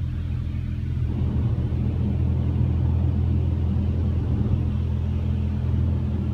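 Water spray from a touchless automatic car wash hitting a truck's body and windows, heard muffled from inside the cab over a steady low hum.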